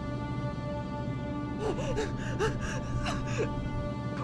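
A woman sobbing in short, gasping whimpers over a sustained music score. The sobs begin about one and a half seconds in and come several times in quick succession.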